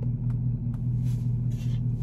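Steady low hum of a car's idling engine heard inside the closed cabin, with a soft breathy exhale of pipe smoke about a second in.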